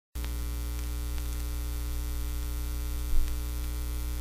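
Vinyl record's lead-in groove playing before the music starts: a steady low electrical hum under surface hiss, with scattered faint clicks and one louder pop about three seconds in.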